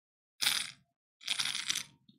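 A person drinking from a cup close to the microphone: two short noisy sips about a second apart.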